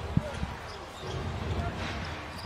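Basketball dribbled on a hardwood court: a few low thuds in the first half second, over a steady low arena background.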